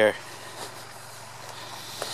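Low, steady hum of a tractor engine idling in the background, with faint swishing steps through tall grass.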